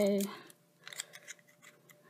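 A few faint, light ticks and rustles as small punched cardstock pieces are handled and pressed together by hand.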